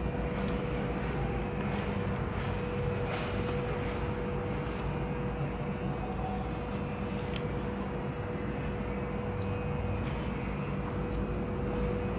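Steady background noise: a low rumble with a constant mid-pitched hum and a few faint clicks.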